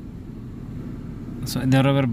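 Low, steady rumble of a car running, heard from inside the cabin; a man starts speaking about one and a half seconds in.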